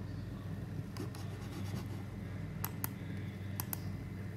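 Low steady hum with two sharp double clicks in the second half, about a second apart, each a computer mouse button pressed and released to advance presentation slides.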